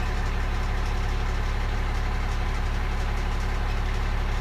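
Six-cylinder Cummins diesel engine in a 2017 Mack truck idling steadily.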